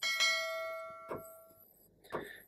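A bell-like notification chime rings out suddenly and fades over about a second and a half, with a short click about a second in: the sound effect laid on a YouTube subscribe-and-bell-icon animation.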